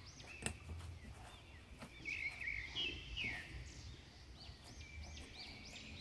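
Faint bird chirps in the background, scattered at first, then a quick run of repeated chirps near the end. There is a single soft click about half a second in.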